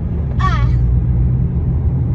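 Steady low rumble of a car driving in traffic, with engine and road noise heard from inside the cabin.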